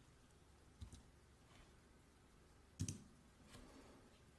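Near silence with a few faint clicks from computer input as a text template is chosen. The clearest click comes a little under three seconds in.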